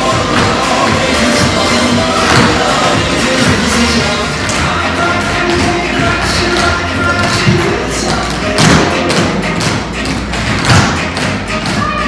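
A group of tap dancers' shoes striking the floor together in rhythmic clusters of taps, over loud backing music.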